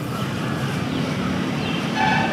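Steady low outdoor background rumble, with a few faint, short high bird calls over it.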